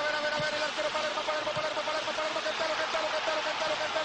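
Football TV commentator's long, held goal cry on one pitch with a slight wobble, over the steady roar of a stadium crowd.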